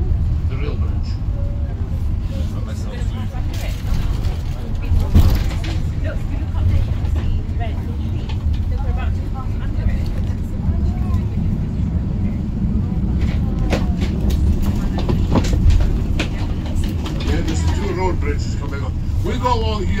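Double-decker tour bus driving along a road, heard from on board: a steady low engine and road rumble, with a couple of brief knocks.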